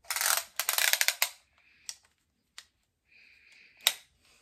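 Spring-loaded retractable body tape measure clicking and rattling as the tape is released and pulled out: a dense run of rapid clicks for about a second and a half, a few single clicks, then a short rasp and a sharp click near the end.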